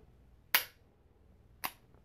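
Taurus 856 .38 Special revolver's action worked in single action: two sharp metallic clicks about a second apart, the first the louder, as the hammer is cocked and falls on an empty case used as a snap cap.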